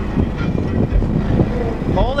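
Deep bass from two 18-inch SMD subwoofers playing loud in the truck, heard from outside at the wheel as a low rumble.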